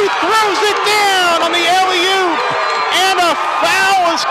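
A male play-by-play commentator talking without a break as the play unfolds.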